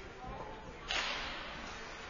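A single sharp crack-like swish from ice hockey play, about a second in, fading quickly in the echo of a large rink.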